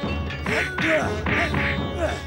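Background music score: a rhythmic beat roughly twice a second, with swooping tones that rise and fall over steady held notes.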